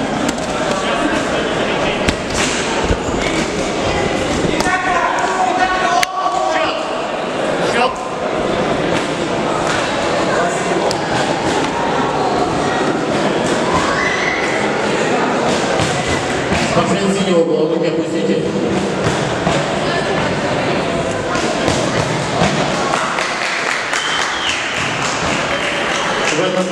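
Sound of a kickboxing bout in a sports hall: many voices shouting over one another, echoing, with repeated thuds from the fighters in the ring.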